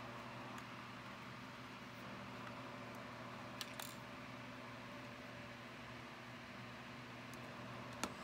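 Steady low mechanical hum in the room, with a couple of faint clicks from plastic toy pieces being handled about three and a half seconds in.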